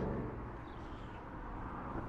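Quiet outdoor background: a low, steady rumble with no distinct events.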